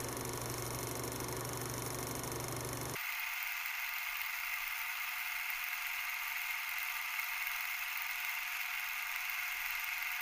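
Steady hiss with a low hum under it. About three seconds in it changes abruptly: the hum and low end drop out, leaving a thinner, higher hiss.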